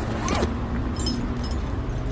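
Scraping and rustling noises with scattered clicks over a low hum, before any music comes in.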